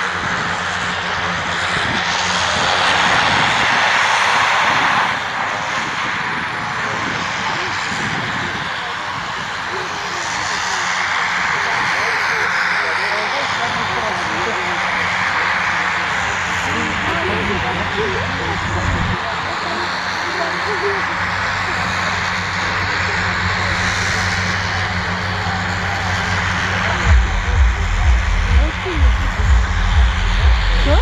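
Antonov An-2 biplane's nine-cylinder radial engine running steadily at low power on the ground. Heavy low buffeting hits the microphone in the last few seconds.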